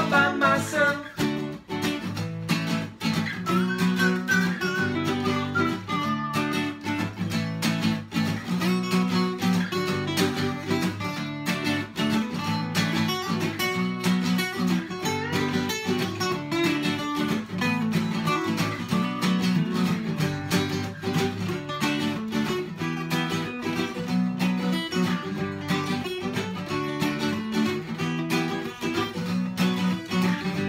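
Two acoustic guitars played together in a steady rhythm, strumming and picking without vocals.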